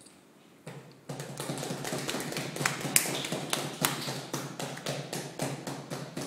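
A small group of people clapping, starting suddenly about a second in and keeping on, with individual claps standing out.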